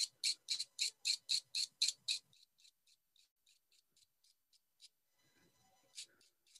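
Quick, even scratchy strokes of a soft-pastel stick being scraped to make pastel dust, about four strokes a second. They are clear for the first two seconds, then fainter and sparser until near five seconds in.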